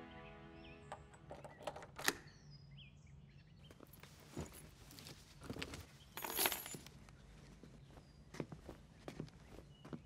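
Music fading out, then scattered clicks, knocks and rustles of a DSLR camera and other small objects being handled on a tabletop. The loudest is a clattering rustle about six seconds in.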